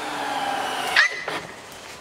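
A dog whining steadily, then letting out a sharp, high yelp about a second in, the cry of a dog that has just touched the electric fence, as the owner suspects.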